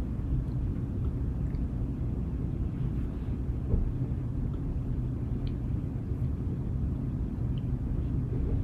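Steady low rumble of room background noise, with a few faint, brief clicks.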